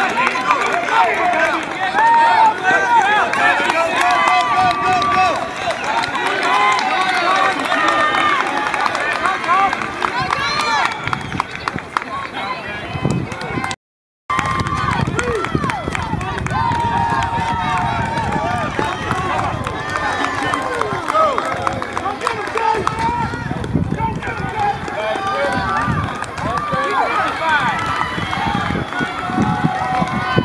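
Many overlapping voices of spectators shouting and cheering on runners in a relay race, continuous throughout. The sound cuts out completely for about half a second about halfway through.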